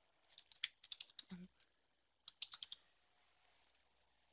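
Faint computer keyboard keys clicking in two quick bursts of taps, with a brief voiced hum between them.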